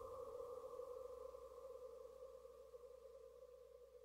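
Faint sustained synth tone, the last held note of the song, fading out steadily toward silence.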